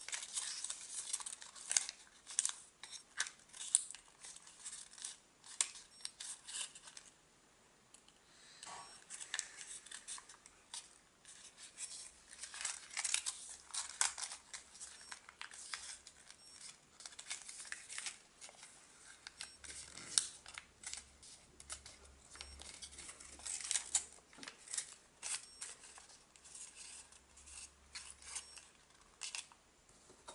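Origami paper rustling and crackling as it is handled and opened out along its existing creases: irregular crisp crinkles with a brief lull about a quarter of the way in.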